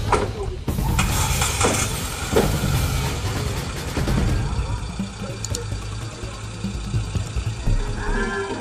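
A small hatchback's engine starting and running, with a couple of knocks like car doors shutting in the first few seconds, under background music.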